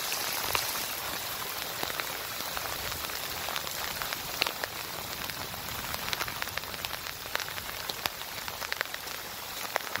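Heavy rain falling: a steady hiss with many scattered sharp ticks of individual drops.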